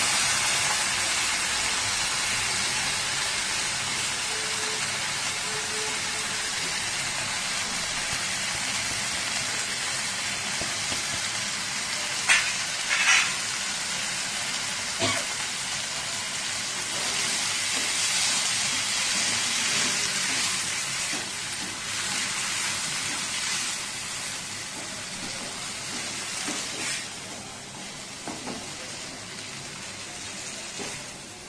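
Green chillies and soaked green fenugreek sizzling in hot oil in a non-stick kadai while a wooden spatula stirs them. The hiss is steady and slowly fades, with a few sharp knocks about twelve and fifteen seconds in.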